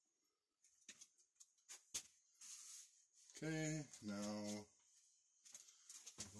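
A few faint clicks and a short rustle from a hand handling the PVC sump pump discharge pipe and its rubber coupling, then a man makes two short wordless vocal sounds, like a hum, past the middle.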